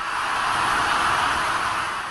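A steady rushing noise with no pitch, easing slightly near the end.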